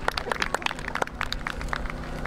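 Scattered hand claps from a small audience, irregular single claps that thin out toward the end, over a steady low hum.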